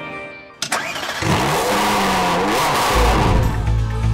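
Car engine start sound effect: a sharp click about half a second in, then the engine catches and revs up and back down. Music with a heavy low beat comes in near the end.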